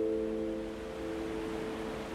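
Gentle piano chord ringing on and slowly fading, over a steady wash of ocean surf.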